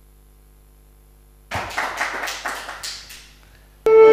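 Applause from a small audience, starting about a second and a half in and dying away after a couple of seconds. Just before the end, louder orchestral music with strings starts abruptly.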